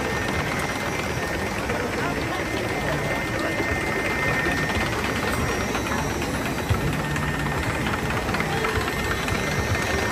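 Steady drone of a river-rapids raft ride's station: moving water in the raft channel and the ride machinery running, with a faint steady whine in the first half.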